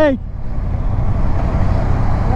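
Motorcycle engine and road noise while riding in traffic: a steady low rumble. It follows a short shouted "hey" at the very start.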